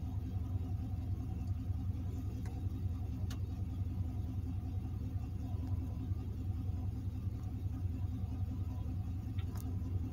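Car engine idling, heard inside the cabin as a steady low rumble, with a few faint clicks.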